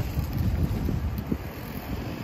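Wind buffeting the microphone: a low rumble that eases off over the two seconds.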